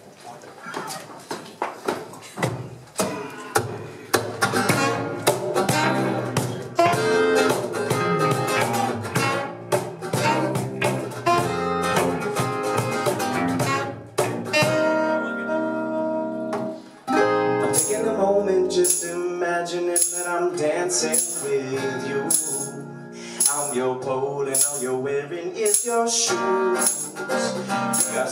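Acoustic guitar strummed in steady rhythmic chords. About two-thirds of the way in, after a brief drop, hand percussion such as a shaker joins in with even hits.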